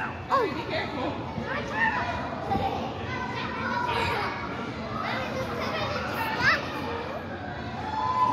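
Children playing in a large indoor hall: several young voices calling out and squealing over a steady background din of play and chatter.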